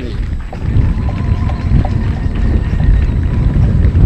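Wind buffeting an outdoor microphone: a steady, loud low rumble, with a few faint, short tones in the background.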